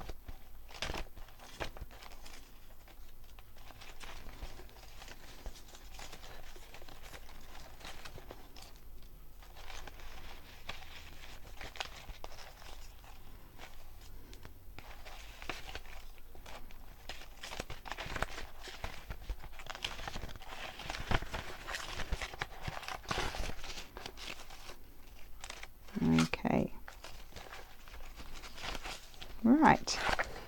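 Paper scraps and cut-out paper embellishments rustling and crinkling as they are picked up, shuffled and laid in layers, in a string of soft rustles and small taps.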